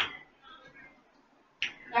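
Two sharp finger snaps about a second and a half apart, with faint speech between them.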